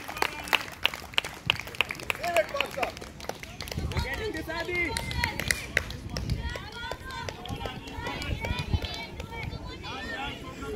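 Faint, distant voices of players and onlookers calling across an outdoor football pitch, with a quick run of sharp ticks in the first three seconds.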